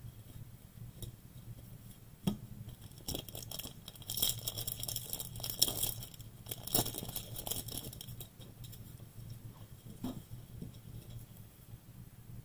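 Foil wrapper of a 2021 Bowman baseball card pack crinkling and tearing open, with the cards clicking and sliding against each other as they are handled. The crinkling is densest in the middle of the stretch.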